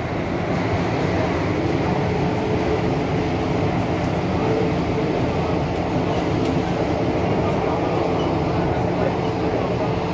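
Kawasaki–CRRC Qingdao Sifang CT251 metro train running through a tunnel, heard from inside the passenger car: a steady rumble of wheels on rail with a steady hum over it.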